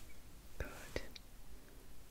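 Soft, faint whispering with a few small clicks, a little past half a second in and again about a second in.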